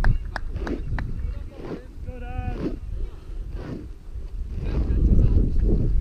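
Wind buffeting the microphone, with a few sharp clicks in the first second and a single drawn-out shouted call from a person about two seconds in.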